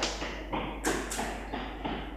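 Chalk tapping and knocking against a chalkboard as numbers are written, heard as several short, sharp taps.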